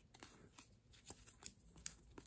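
Sleeved trading cards being flipped through by hand: a few faint, short slides and clicks of card and plastic, the sharpest near the end.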